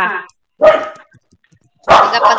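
A dog barking, with one short, sharp bark about halfway through, picked up over a participant's open microphone in a video call. A sharp click comes near the end.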